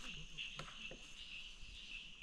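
Faint, steady high-pitched chorus of insects in the undergrowth, pulsing slightly, with a few soft ticks.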